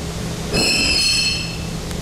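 Westinghouse traction freight elevator stopping hard, over the steady low hum of its hoist machinery. About half a second in, a loud, high metallic squeal sounds for about a second as the car stops. The stop is abrupt, one the rider calls aggressive, on a worn car that rides roughly.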